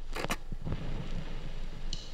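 Two quick clicks from an 8-track tape player as the cartridge seats, followed by steady tape hiss with a low rumble as the tape runs up to the start of the song. A faint tick comes near the end.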